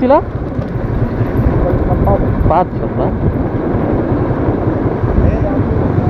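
Motorcycle being ridden at low speed: its engine running under a steady low rumble of wind on the microphone, with a brief voice call about two and a half seconds in.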